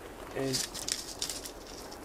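Brief light rattle and clatter of a handled sieve being lifted out of a bowl, a cluster of short sharp clicks just after half a second in.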